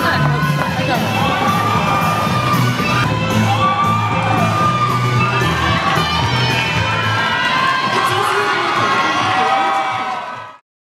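A crowd of many high voices cheering and shouting excitedly over loud music, in a large hall.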